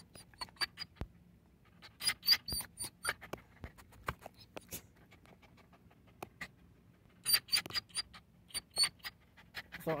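Excited dog panting and fidgeting, with quick rhythmic clicks and the light jingle of its metal collar tag in two short bouts a few seconds apart.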